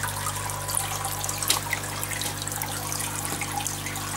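Aquarium water trickling and splashing, with many small drips, over a steady low hum.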